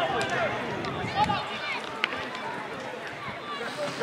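Several voices of footballers and spectators calling and shouting across an outdoor football pitch, overlapping and indistinct, with a couple of sharp knocks.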